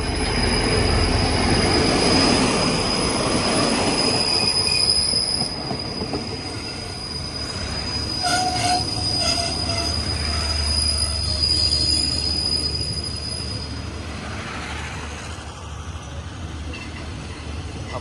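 State Railway of Thailand QSY-class diesel-electric locomotive and its passenger coaches passing close by, loudest in the first few seconds as the locomotive goes past. The coaches then roll by over a low rumble, with a steady high-pitched squeal as the train brakes to slow for a set of points; the squeal stops about three-quarters of the way through.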